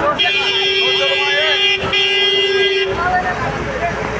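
A vehicle horn held down in one long steady note, briefly broken just under two seconds in and stopping about three seconds in, over the voices of a gathered crowd.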